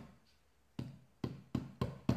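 A child's hand patting down on a sock laid on a tabletop, pressing the tape down: about five dull knocks, irregular, coming quicker toward the end.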